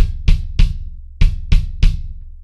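Kick drum fitted with a coated Remo Powerstroke head, struck six times in two groups of three evenly spaced strokes. Each stroke is a sharp beater click over a short, low boom.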